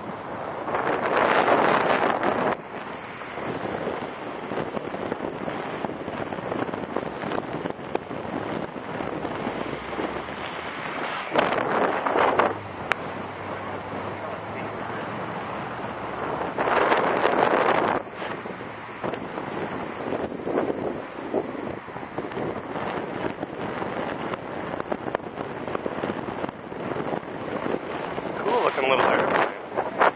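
Wind blowing across the microphone in a steady rush, with four louder gusts of buffeting: one about a second in, two in the middle, and one near the end.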